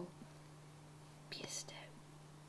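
Very quiet room with a faint steady hum; about a second and a half in, a brief whisper.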